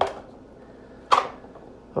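A single short, sharp click about a second in, in a quiet small room.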